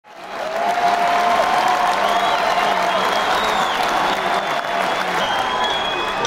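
Concert audience applauding and cheering, fading in over the first second and then holding steady.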